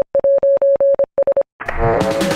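A cartoon robot's electronic beeping: a rapid run of about a dozen short beeps at one steady pitch, with a brief break a second in. A burst of music comes in near the end.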